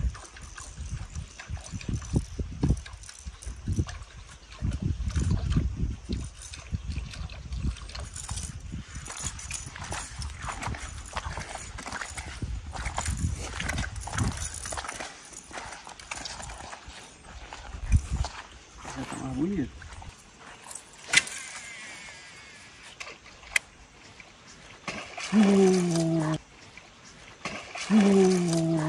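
Wind buffeting the microphone with low voices for about the first half, then a sharp click a few seconds later and a person's drawn-out call with falling pitch near the end.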